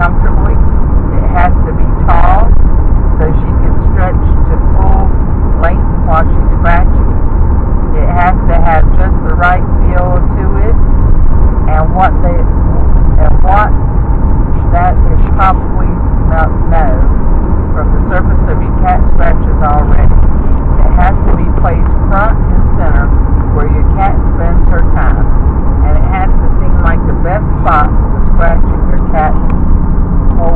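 Car cabin noise from a moving car: a steady low road and engine rumble, with indistinct voices talking on and off throughout.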